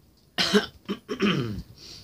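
A woman clearing her throat: two short coughs about half a second apart, then a voiced sound falling in pitch.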